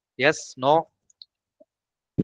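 A short two-syllable spoken utterance whose pitch rises on the second syllable, then a couple of faint clicks.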